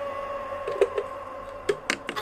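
Sharp clicks and taps of small objects being handled on a tabletop: two about a second in and a few more near the end. Under them, a steady held tone fades away.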